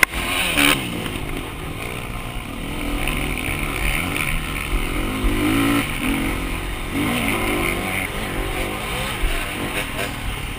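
Dirt bike engine revving up and down as it accelerates and shifts along a dirt track, heard close from the bike with low wind rumble on the microphone. A sudden clatter about half a second in.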